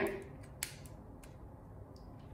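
A few faint clicks of small plastic LEGO pieces being pressed onto a LEGO model, the clearest about half a second in.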